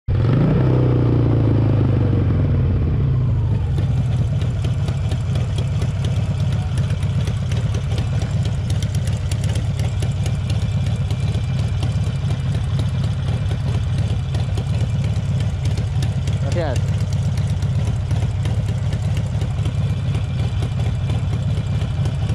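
Harley-Davidson Sportster 1200 Roadster's air-cooled V-twin coming off the throttle, its revs falling over the first few seconds as the bike slows to a stop, then idling steadily.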